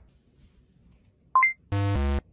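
Card payment terminal tones: a short beep stepping up in pitch as the card is tapped, then a loud, harsh buzz of about half a second near the end, the error tone of a declined card.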